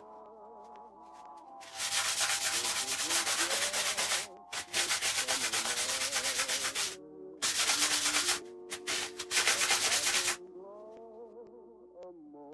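Paper towel rubbed hard over the cast-iron body of a hand plane, degreasing it with ethanol before cold bluing. The rapid scrubbing comes in four spells, starting about two seconds in and stopping a little before the end, over soft background music with wavering held notes.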